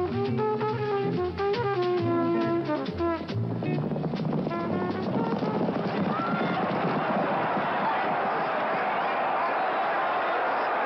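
Brass-led jazz music with drums, ending about three seconds in. From about four seconds on, a steady crowd noise of many voices cheering and shouting at a horse race.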